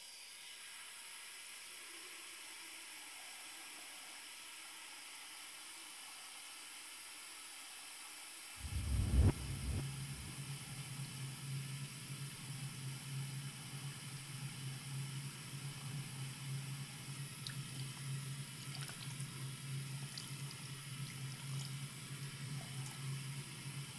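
A steady hiss, then a sudden loud low thump about eight and a half seconds in, after which a steady low hum runs under a rushing, fluctuating noise.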